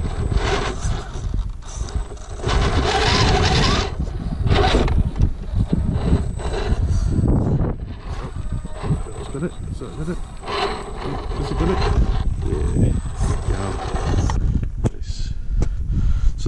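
HPI Venture scale RC rock crawler's electric motor and gears whining in short bursts as it is inched up a steep wet rock, over a constant low rumble.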